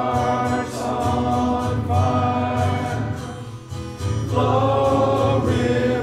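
Congregation singing a hymn with instrumental accompaniment, with a brief break between lines a little past halfway.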